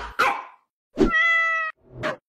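A cat meowing: one held meow of under a second, about halfway through, steady in pitch. Brief noisy sounds come just before and after it.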